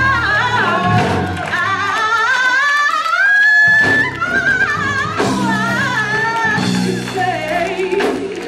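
A female gospel soloist sings into a microphone with melismatic runs and vibrato over low instrumental backing, holding one long high note about three seconds in that breaks off just before the fourth second.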